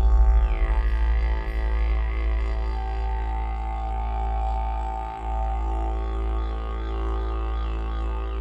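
Background music: a didgeridoo playing one low, steady drone with rich overtones that slowly shift and warble. The drone dips briefly about five seconds in.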